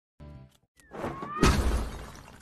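A cartoon sound effect: a brief musical note, then a rising swell that ends in a loud shattering crash about one and a half seconds in, with the crash ringing out.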